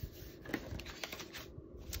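Hands pressing and smoothing patterned paper onto a white card base, with a few light paper rustles and taps about half a second in.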